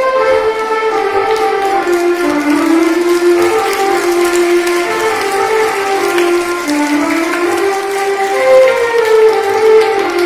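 A slow melody played on a small electronic keyboard, one held note after another stepping up and down in a sustained voice.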